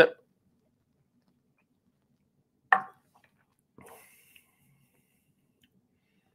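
Near silence of a small room while a man sips whiskey from a tasting glass, broken about three seconds in by one short mouth sound as he swallows. A fainter, brief sound follows a second later.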